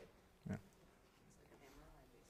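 A single short, low-voiced "yeah" about half a second in, over otherwise near-silent classroom room tone.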